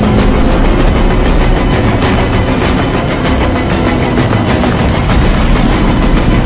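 Loud, steady rush of wind and road noise while riding along on a motor scooter, with scooter engines running.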